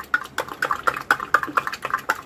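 A metal spoon stirring milk in a steel tumbler, clinking against the sides in a quick, even run of light taps, about six a second.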